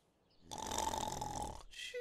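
A cartoon rain cloud snoring in its sleep: one breathy snore about a second long, followed by a short whistling note.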